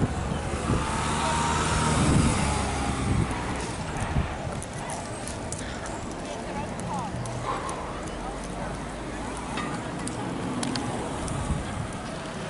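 A car driving past on the road, its engine and tyre noise swelling to a peak about two seconds in and fading by about three seconds, leaving a lower steady street background.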